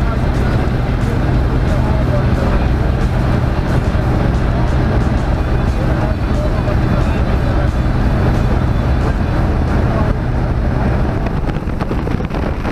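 Steady drone of a small single-engine jump plane's engine and propeller, heard from inside the cabin. Near the end it gives way to rushing wind noise.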